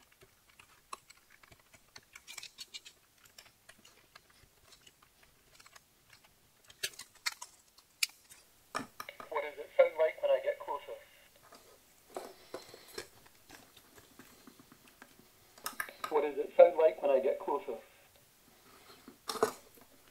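A craft knife scoring and cutting a thin plastic lid: light scratches and clicks. Then, about nine and again about sixteen seconds in, the ISD1820 voice-recorder module plays back its recorded spoken phrase through its small speaker, thin-sounding with no bass.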